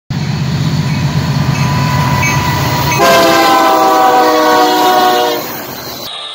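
Union Pacific diesel freight locomotives rumbling past, then the locomotive horn sounding one long chord of several tones from about three seconds in. The horn holds for a little over two seconds and is the loudest thing in the clip.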